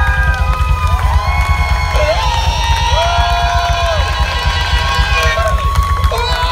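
Live rock band playing: a singer holds long, sliding notes over continuous drums and bass.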